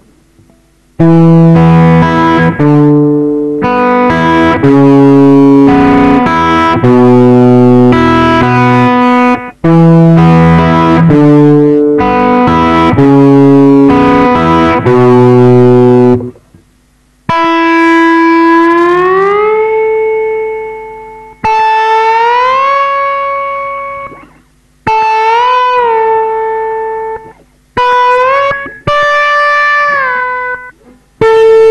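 Electric guitar played solo with a slide. For the first fifteen seconds or so, ringing notes are picked in repeating phrases, with low and high notes together. After that the slide glides up into held notes, in short phrases with brief gaps between them.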